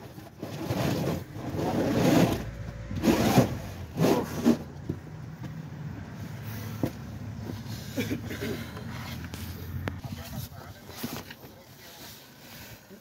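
Indistinct voices talking in short bursts in the first few seconds, then lower background noise with a faint steady hum.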